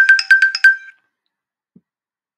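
A short electronic chime: about six quick ringing notes at much the same pitch, all over in less than a second, typical of a slide-show sound effect.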